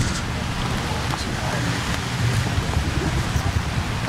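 Wind buffeting the microphone in a low, uneven rumble, over a steady hiss of rain.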